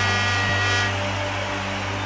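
Slow instrumental intro of a live rock song: a sustained low keyboard drone, with a bright held note ringing over it for about the first second.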